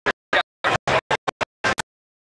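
Audio cutting in and out: about nine short bursts of sound, each a fraction of a second long, chopped off abruptly with dead silence between them.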